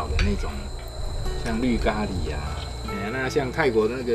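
Insects chirring in a steady high trill, running on without a break under the talk.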